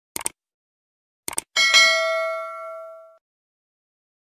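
Subscribe-button animation sound effect: two quick mouse clicks, two more about a second later, then a bright notification bell ding that rings out and fades over about a second and a half.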